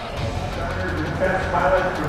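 A man's voice over a stadium public-address system, with music playing under it.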